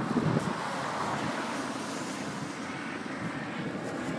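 Road traffic on a busy street: a steady rush of passing vehicles, swelling a little in the middle and easing off again.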